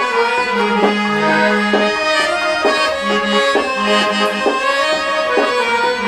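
Harmonium played by hand, its reeds sounding a quick melody with the notes changing several times a second while the bellows are pumped.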